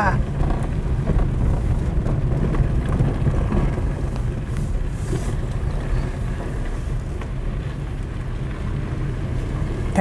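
Steady low rumble of a car moving slowly, with wind on the microphone.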